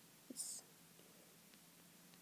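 Near silence: room tone, with one brief soft breath-like hiss about half a second in.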